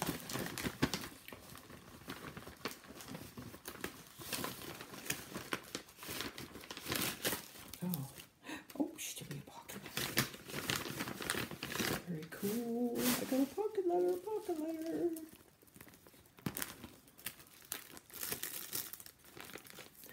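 Paper crinkling and rustling on and off as a handmade paper envelope and its contents are handled and opened.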